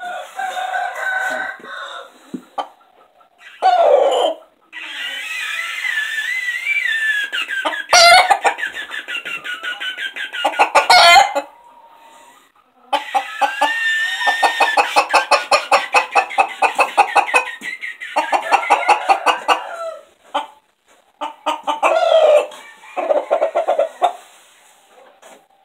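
Rooster crowing repeatedly at close range: a series of drawn-out calls, several lasting a few seconds each, with short breaks between them.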